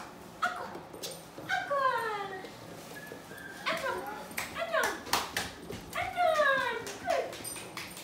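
Puppy whining: several long whimpers that fall in pitch, with sharp clicks between them.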